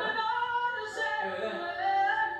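A voice singing unaccompanied, holding long notes and gliding between pitches.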